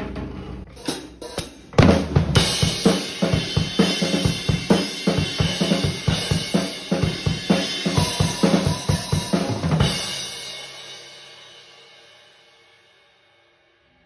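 Gretsch Catalina Club drum kit with Zildjian cymbals played live: a few opening hits, then a steady beat on kick, snare and cymbals for about eight seconds. The playing stops about ten seconds in and the cymbals ring on, fading away over about three seconds.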